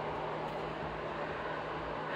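Steady machine hum, one constant low tone under an even hiss, holding level without change.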